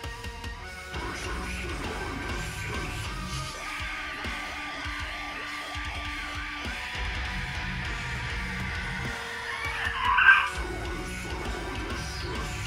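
Deathcore music playing. The heavy low end drops away for a couple of seconds mid-way, leaving sustained tones, and a sudden loud burst comes about ten seconds in.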